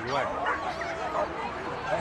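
A dog yipping and barking repeatedly in short, high calls, over background voices.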